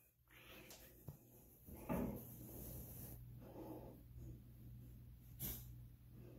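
Faint breathing, a few slow breaths about a second and a half apart, with a soft tap as a foot goes onto a digital bathroom scale.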